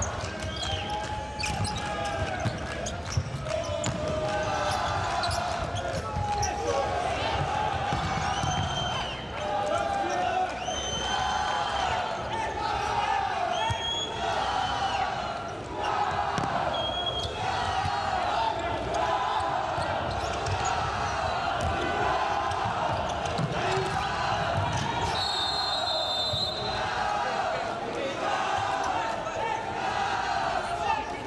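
Futsal play on an indoor hard court: the ball being kicked and bouncing, shoes squeaking, and players shouting to one another. A shrill referee's whistle sounds near the end.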